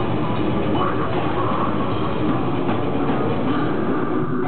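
Death metal band playing live: a dense, unbroken wall of distorted guitars and drums at steady loudness.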